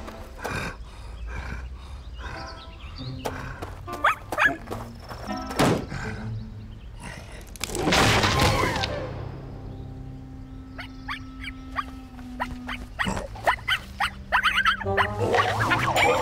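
Cartoon background music with comic sound effects. About eight seconds in there is a loud crash with a cartoon cry as the animated bear tumbles onto a wooden deck chair.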